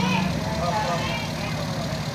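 A motor vehicle engine idling with a steady low rumble, with voices in the background.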